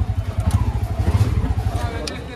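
Auto-rickshaw's small engine running with a fast, even low putter, a little louder about a second in.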